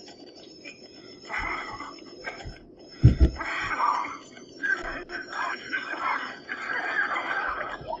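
Hushed, whispering voices in short breathy bursts, with a dull low thump about three seconds in.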